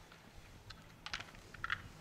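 Slalom gate poles being struck by a ski racer: a few sharp plastic clacks in quick clusters, the first just under a second in and the rest in the second half.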